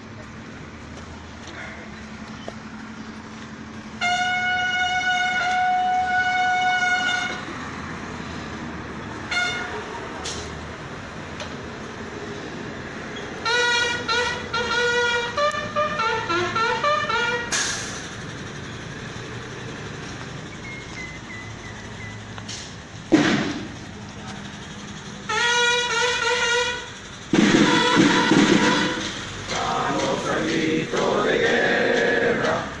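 Brass horn calls: one long held note a few seconds in, then a run of short notes stepping down in pitch around the middle, and another short run of notes near the end.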